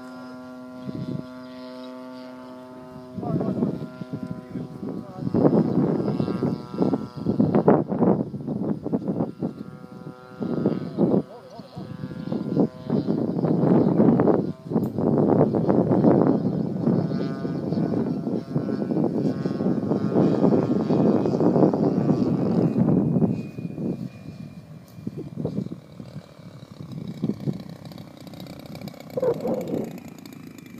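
Large RC model plane running on its one remaining engine, a steady droning tone overhead for the first few seconds. Then a loud, irregular rushing noise covers it for about twenty seconds before easing off near the end.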